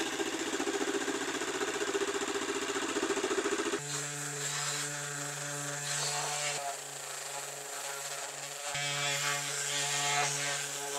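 A DeWalt jigsaw running and cutting through a hollow-core door panel, its blade stroking rapidly. Just under four seconds in, the sound changes abruptly to a DeWalt random orbit sander running steadily against the freshly cut arched edge.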